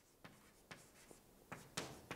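Chalk tapping and scraping on a chalkboard: a few faint taps at first, then sharper strokes from about a second and a half in.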